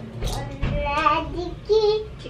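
A young child's singsong voice, drawn-out pitched notes with a held note near the end, and a low bump of handling noise near the start.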